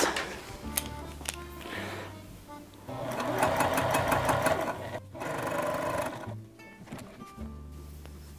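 Juki TL-2010Q sewing machine running in two spells of rapid stitching, the first about three seconds in and a shorter one just after, sewing a bias-tape binding onto a fabric pocket. Background music plays underneath.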